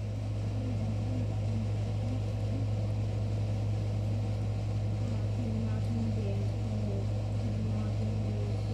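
A steady low hum runs throughout, with faint, broken voice sounds behind it.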